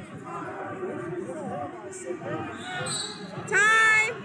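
Voices calling out in a large echoing gym over background chatter, with one loud, high-pitched shout near the end.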